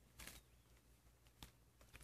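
Near silence, with a few faint short crackles: a brief cluster just after the start, then single clicks about one and a half seconds in and near the end.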